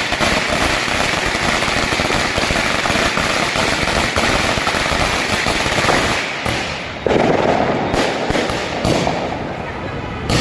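A long string of firecrackers going off in a rapid, continuous crackle of bangs. About seven seconds in, a sudden louder burst starts up and then tapers off.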